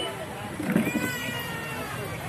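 Background voices of people talking in the open, with a high, drawn-out call about a second in.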